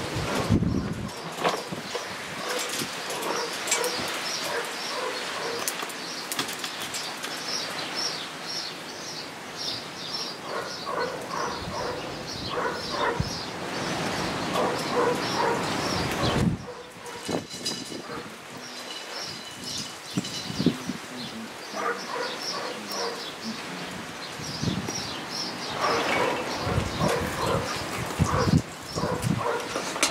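Wind on the microphone with birds chirping over it in quick repeated notes. The wind noise drops abruptly about halfway through.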